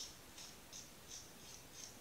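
Pocket knife scraping the thin enamel insulation off the end of copper winding (magnet) wire, a faint run of short scratches about three a second.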